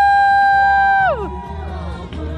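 A single high voice holds one long, loud shouted call at a steady pitch, then slides down and cuts off about a second in. Faint crowd noise follows.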